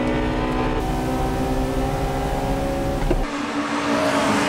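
Honda Integra Type R's B18C four-cylinder VTEC engine running hard at steady high revs, heard from inside the cabin with a heavy low rumble. A little past three seconds the sound cuts abruptly to trackside, where several cars are heard approaching with lighter engine note and wind-like hiss.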